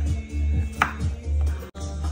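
Background music with a steady bass beat, and a knife chopping through a lime onto a wooden cutting board about a second in. The sound drops out for an instant near the end.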